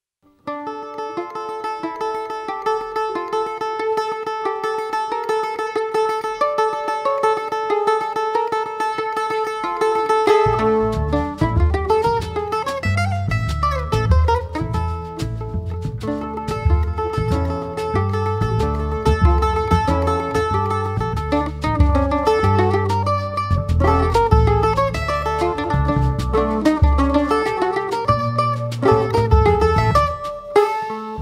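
Live Brazilian instrumental music: a bandolim (Brazilian mandolin) plays alone, starting about half a second in with a quickly repeated high note under a melody. About ten seconds in, double bass and drum kit join and the trio plays on together.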